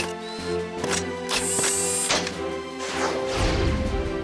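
Cartoon background music with mechanical sound effects as the robots' hands become power tools: a high whirring burst in the middle, then a falling swoosh and a low rumble near the end.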